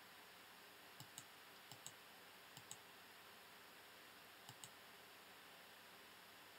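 Faint computer mouse clicks over near silence: four quick press-and-release double clicks.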